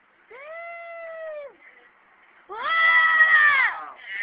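Two long, high voiced calls, each rising, holding and then falling in pitch; the second is louder.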